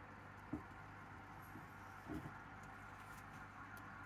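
Faint steady electrical hum with two soft, low knocks, about half a second and two seconds in.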